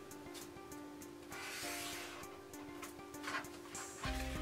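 Quiet background music with steady held notes, and a soft rustle of paper pattern pieces being slid on the cutting mat about a third of the way in.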